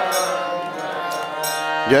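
Electronic keyboard holding a steady sustained chord in a pause between the sung lines of a devotional kirtan. A man's singing voice comes back in near the end.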